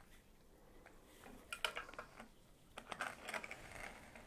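Light clicks, clinks and rustling from hands handling string and the small metal hook of a luggage travel scale against a wooden bar, in two short flurries.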